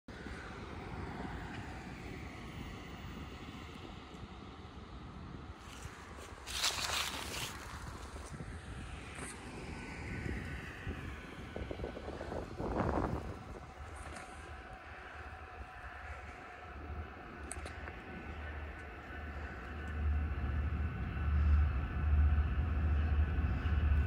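Distant BNSF freight train approaching on the main line: a low rumble that grows steadily louder over the last few seconds. Two brief rushes of noise, about seven and thirteen seconds in, stand out above the background.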